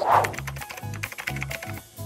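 Background music with a steady bass beat. A short whoosh at the start marks a scene transition, followed by a quick run of light clicks like keyboard typing, and a few melody notes near the end.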